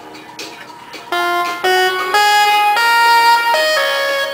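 Keyboard synth played through a talkbox, coming in loud about a second in over quieter music: a run of held notes stepping from one pitch to the next, with the sound shaped into vowels by the player's mouth.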